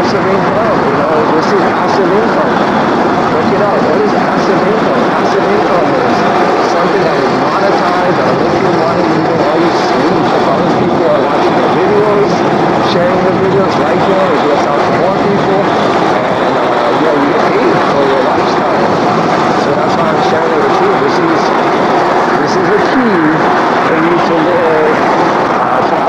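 Steady wind rush over the camera's microphone from riding an e-bike at about 11 mph, mixed with tyre noise on a grooved concrete path and scattered light ticks.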